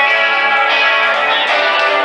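Live rock band music led by electric guitar, playing held chords with almost no bass underneath.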